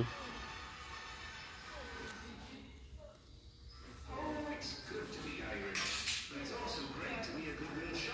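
Indistinct background talking in a shop aisle, with a brief clatter about six seconds in.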